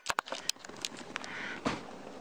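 A few light clicks and knocks of hands at work over a faint hiss: three quick ones right at the start, then single clicks every few tenths of a second, and a short soft knock near the end.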